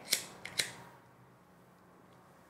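A handheld lighter flicked three times in quick succession within the first second: short, sharp clicks, the first a little raspy.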